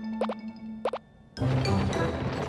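Two quick rising 'plop' cartoon sound effects about half a second apart over a held low tone in children's background music, then louder music swells in suddenly near the end.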